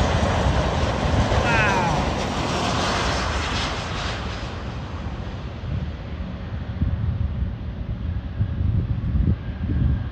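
Boeing 737 MAX's CFM LEAP-1B turbofan engines passing close on final approach: a loud rushing jet noise with a falling whine about one and a half seconds in, fading after about four seconds. Uneven low rumbling follows as the airliner rolls out on the runway.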